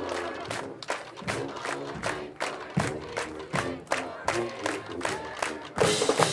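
Marching band music with a steady drum beat of about four to five strokes a second, over crowd noise from the stands. It gets suddenly louder just before the end.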